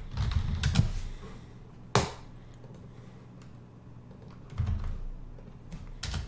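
Computer keyboard typing in short bursts: a quick run of keystrokes at the start, a single sharp key tap about two seconds in, and another short burst near the end.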